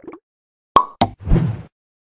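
Animated-outro sound effects: a sharp pop with a brief ring, a second click a quarter of a second later, then a short whooshing swell about half a second long.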